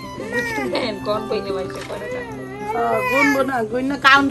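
A cat meowing twice, long calls that rise and fall in pitch, the second longer than the first, over background music.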